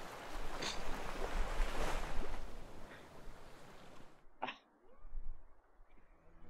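Strong wind buffeting the camera microphone, a rushing noise with a low rumble that cuts off suddenly about four seconds in as the wind is shut out. One short sharp sound follows.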